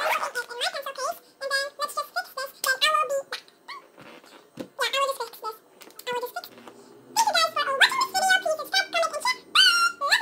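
A young girl's high-pitched voice talking, with steady background music coming in about six and a half seconds in.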